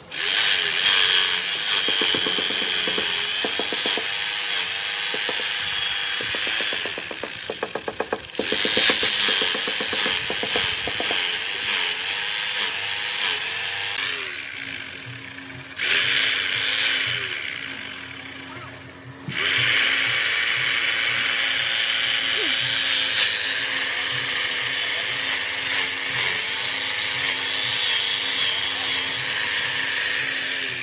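Electric hammer drill boring holes into a concrete pillar, running in several long spells of a few seconds each with short pauses between them as the bit is pulled out and moved to the next hole.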